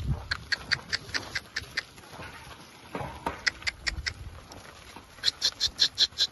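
Rapid runs of short, high-pitched chirps, about five a second, coming in three bursts: a long run at the start, a short one in the middle and another near the end. A dull low thump sounds right at the start.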